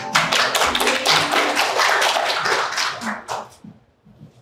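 Audience applauding, a dense patter of many hands clapping that dies away about three and a half seconds in.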